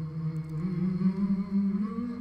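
A low voice humming a long held note that steps slowly upward in pitch, as music under a news report.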